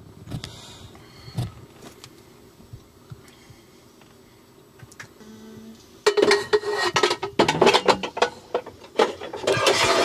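New engine oil pouring from a plastic jug into the filler of a Perkins 4-236 diesel. The pour is quiet at first, then from about six seconds in it turns to loud, irregular glugging as air gulps back into the jug.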